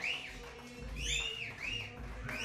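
Three high, whistle-like notes sent into the vocal microphone, each sliding up and then down in pitch, over a quiet band.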